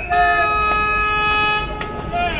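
A horn sounds one steady blast of about a second and a half, several tones held together as a chord.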